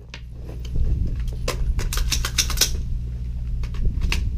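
A run of sharp clicks and rattles from an AR-15 carbine and the shooter's gear being handled as he drops from standing to a kneel, densest about two seconds in, over a steady low hum.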